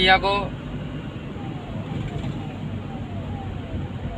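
Car cabin road noise while driving: a steady low rumble, with a man's voice briefly at the very start. A faint short falling tone repeats about three times a second from about a second in.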